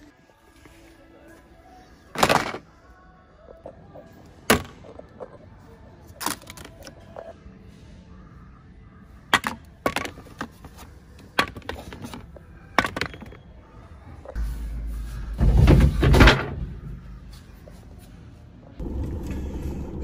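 Sharp knocks and clatter of hardware items being handled in a plastic shopping basket, every second or two. About 15 s in comes a louder rushing rumble, and near the end a low steady hum begins.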